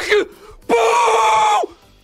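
A man's excited scream: a short yell at the start, then one long held high scream of about a second whose pitch drops away at the end, in celebration of a big slot win.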